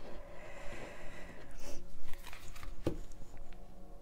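Tarot cards being handled on a tabletop: soft rustling of the deck with a few light taps, the clearest a little under three seconds in.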